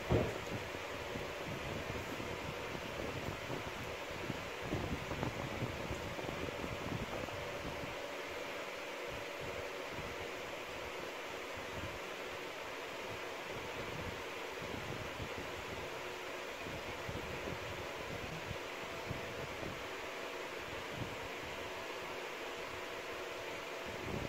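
A fan running with a steady whir, with faint rustling from hands working through thick coily hair.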